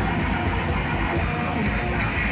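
Hardcore punk band playing live at a steady loud level: electric guitars, bass guitar and a drum kit.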